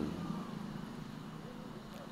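Faint, steady low background rumble.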